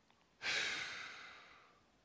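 A man's long exhale, a sigh that starts sharply about half a second in and fades away over about a second and a half.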